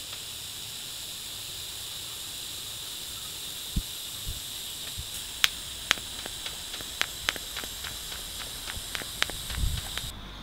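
TIG welding arc on 1.5 mm stainless steel at 60 amps, hissing steadily, with a scattering of sharp ticks in the second half. The hiss cuts off at the end as the arc is stopped.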